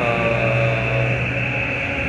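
A man's drawn-out hesitation sound, a held 'uhh' at one steady pitch for about a second that fades out, over steady background room noise.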